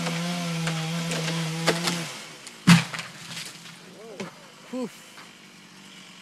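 A chainsaw runs at a steady high pitch for about two seconds and cuts out, then a felled tree trunk hits the ground with a single heavy thud.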